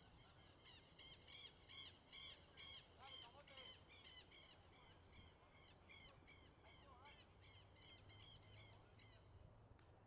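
A bird calling over and over, a rapid series of short harsh calls at about three a second, louder in the first few seconds and fainter towards the end.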